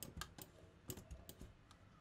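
Faint, irregular clicking of a computer mouse and keyboard, several separate clicks over two seconds, as notes are entered in a music program.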